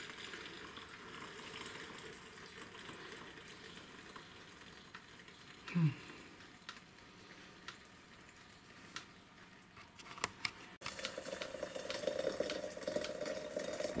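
Hot water poured from an electric kettle into a glass teapot over loose tea in a mesh infuser: a steady pouring trickle. It gets louder after a sudden break about eleven seconds in.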